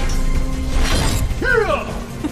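Battle-scene soundtrack of an animated series: dramatic music with a crashing, shattering sound effect about a second in. A short voiced sound follows near the end.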